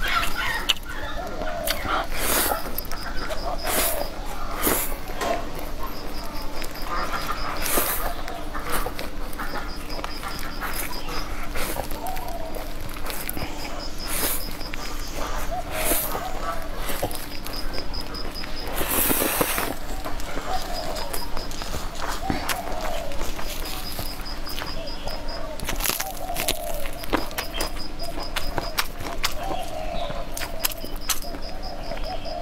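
Stir-fried rice noodles being slurped and chewed close to a clip-on microphone: frequent wet mouth clicks and smacks, with one longer slurp about two-thirds of the way through.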